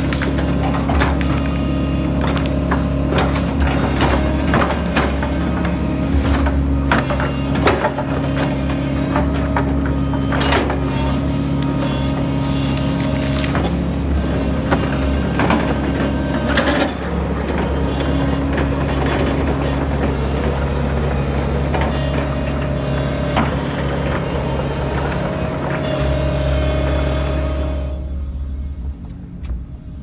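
Case tracked excavator's diesel engine running steadily while its bucket works into brush and small pine trees, with occasional sharp cracks. The sound falls away near the end.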